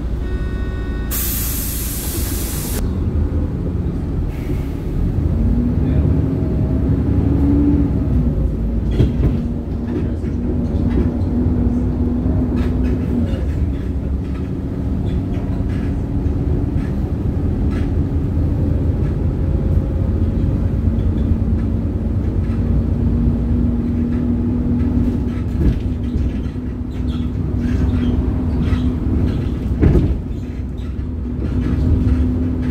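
Inside a moving city bus: a steady low rumble of engine and road, with a hum that rises in pitch and then holds steady. A loud hiss of air comes about a second in and lasts under two seconds.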